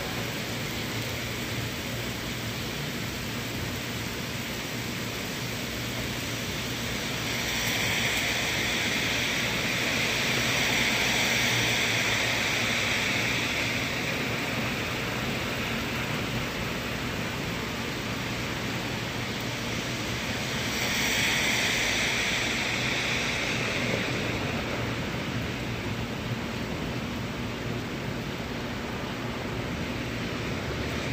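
Steady rain falling, a continuous hiss, with two longer swells of louder hiss about a quarter and again about two thirds of the way through.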